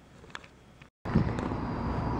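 Faint indoor room tone with a single light click, then, after a cut, steady outdoor background noise with a low rumble.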